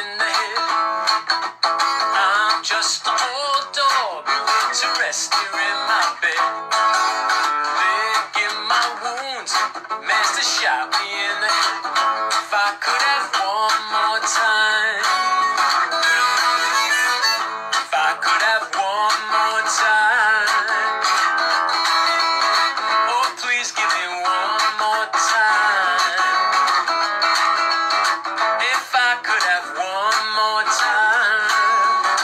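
Acoustic guitar strummed along with a harmonica played on a neck rack, an instrumental stretch of a song with no sung words.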